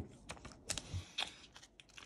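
Light clicks and soft rustling of a trading card and its clear plastic sleeve being handled, a few irregular taps close together.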